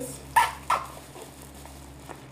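A dog barking twice, two short sharp barks about a third of a second apart.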